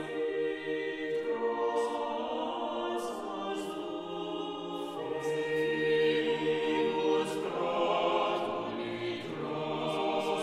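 Unaccompanied mixed-voice vocal ensemble singing a Renaissance Latin motet in several interwoven parts, sustained chords with a low bass line under higher voices.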